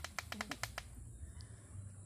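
A quick run of about eight sharp clicks, roughly ten a second, dying out before the first second is over, over a faint low hum.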